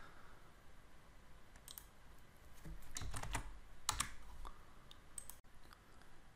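Faint computer keyboard and mouse clicks: a few scattered keystrokes and clicks, bunched together about three to four seconds in.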